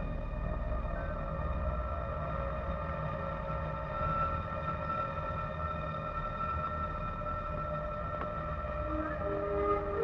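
Film background score: a tense drone of several long held notes over a low rumble, with lower notes joining near the end.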